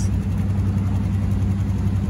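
Motor-vehicle engines idling in stopped traffic: a steady low hum that neither rises nor falls.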